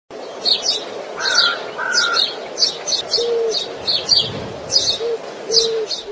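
Birdsong: short chirps repeated in quick clusters about twice a second. Two held whistles come a little over a second in, and a few short low notes come later.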